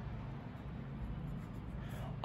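Pen writing on paper: faint, irregular scratching of the pen tip.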